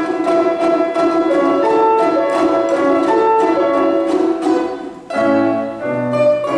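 A unison ensemble of children's balalaikas plays a folk melody with grand-piano accompaniment. About five seconds in the music dips briefly, then starts a new phrase with deeper notes beneath the melody.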